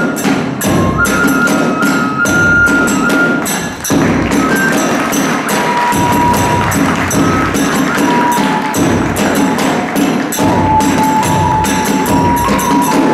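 Hiroshima kagura music: a bamboo flute plays a high, held melody over fast, continuous strokes of a large taiko drum and clashing small hand cymbals. The flute line drops lower about halfway through.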